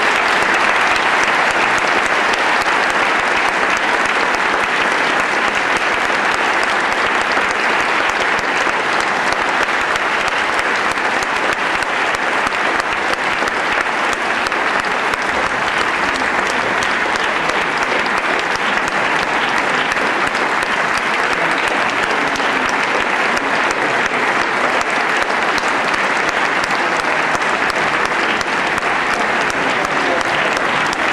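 Theatre audience applauding steadily: a dense, even clapping that holds at one level.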